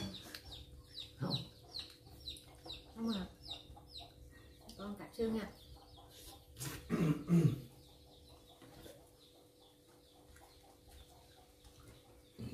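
A bird chirping quickly, a run of short, high, falling chirps about three a second for the first four seconds. Brief low vocal sounds come and go, the loudest about seven seconds in.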